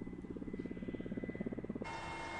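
Helicopter flying towards the camera, its rotor blades making a rapid, even chop. Near the end the sound cuts abruptly to a steadier, hissier drone.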